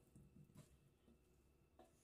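Near silence: faint room tone with a few very soft ticks.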